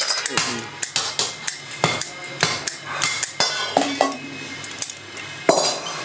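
Cast metal hooks clinking and knocking against one another and against metal as they are handled and cleaned by hand: an irregular run of sharp clicks and knocks, some with a short metallic ring.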